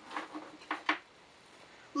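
A few soft knocks and rustles in the first second, then quiet: a person moving about at a counter and handling a lava lamp and its cord.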